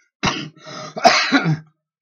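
A man coughing and clearing his throat, three rough bursts, the last and loudest lasting about half a second.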